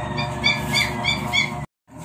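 Guinea pig squeaking: about five short, high calls, roughly three a second. The sound drops out completely for a moment near the end.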